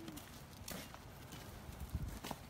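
A few faint knocks against a low background hiss, the clearest one near the end.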